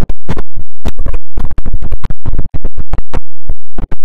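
Heavily distorted, clipped audio chopped into rapid stuttering bursts, several a second, with sudden gaps between them: a 'G Major' style effects edit of a sound.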